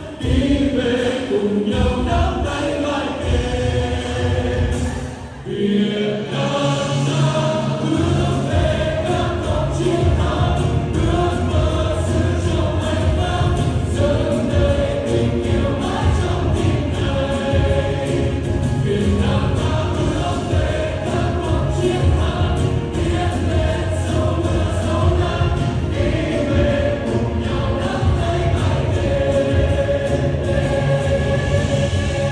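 A Vietnamese patriotic pop song performed live by a male lead singer and a female vocal group over a backing track with a steady beat. The music thins out briefly about five seconds in, then comes back at full strength.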